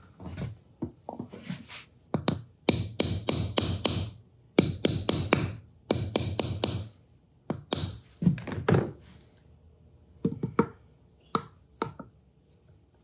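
A mallet tapping black support pins deeper into a round Richlite base to lower them. The taps come in quick runs of four or five a second, in several bursts, then a few single taps near the end.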